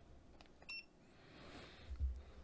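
A single short electronic beep from a Mustool MT11 pocket multimeter about two-thirds of a second in, as a button press switches its mode. Faint handling noise around it.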